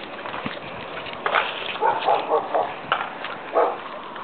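A dog giving a few short barks: one about a second in, a quick run of them around the middle, and one more near the end.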